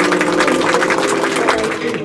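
A glittery sound effect added in editing: a rapid flurry of tinkling, chime-like sparkles over a few held tones. It cuts off near the end.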